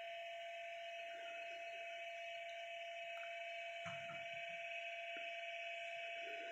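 Faint, steady hum with a constant high hiss, with a few soft, faint taps of handling in the middle.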